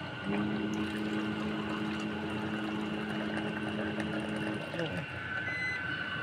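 Electric hot water dispenser's pump motor running with a steady hum for about four seconds, then cutting off, as it dispenses water.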